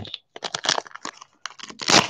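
Foil wrapper of a trading-card pack crinkling and tearing as it is opened by hand, in quick irregular crackles that get denser near the end.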